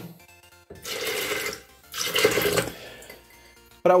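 Water poured from a small glass into a plastic blender jar holding dry beans, in two pours of about a second each.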